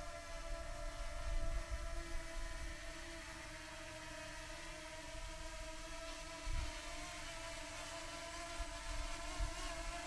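DJI Mini 2 SE quadcopter drone flying a short way off, its propellers giving a steady whine of several stacked tones. Gusts of wind rumble low on the microphone.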